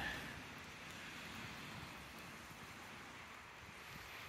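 Faint, steady outdoor city ambience: an even hiss of distant street traffic.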